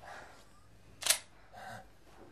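Strained breathing of two people struggling, with short breaths near the start and again near the end, and one sharp click about a second in that is the loudest sound.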